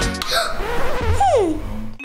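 A children's pop backing track cuts off just after the start. A girl's laugh-like vocal sounds follow, with a falling swoop in pitch a little past halfway.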